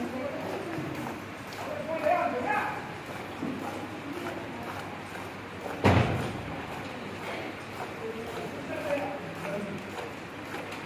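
Voices talking at intervals, and one loud thud about six seconds in.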